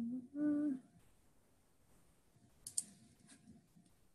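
A woman's short hum in the first second, then quiet broken by two quick computer-mouse clicks a little under three seconds in and a few fainter clicks after.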